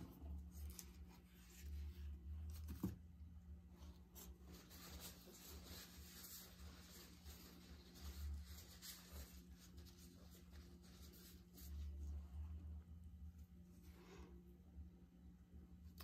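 Near silence: room tone with a steady low hum and a few faint clicks and rustles.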